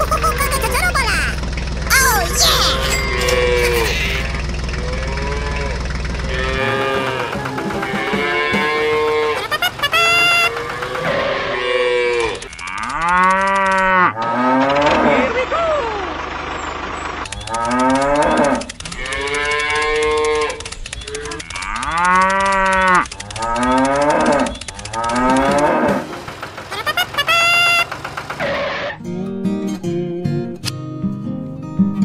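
Cattle mooing: about twenty calls one after another, dubbed in as sound effects for toy cow figures. For the first six seconds or so a steady low hum runs beneath the calls, then stops.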